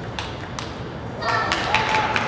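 Table tennis ball ticking sharply off bats and table in a rally. About a second in the point ends and voices rise, mixed with more ticks and taps.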